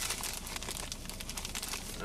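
A bag of e-liquid bottles being rummaged through by hand: steady crinkling and rustling, made of many small crackles.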